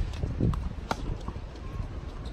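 Tennis ball hit with rackets and bouncing on a hard court during a rally: sharp pops, one at the start and a louder one about a second later, over a low steady rumble.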